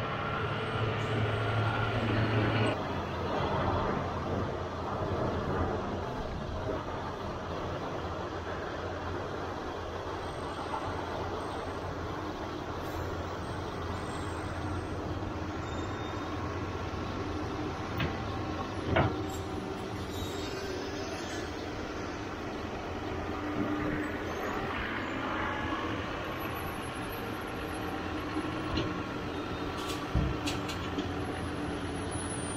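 John Deere loader tractor's diesel engine running while it carries round hay bales on a bale grapple and sets one into a feeder. It is louder for the first few seconds, then runs steadily, with a single sharp knock about two-thirds of the way through.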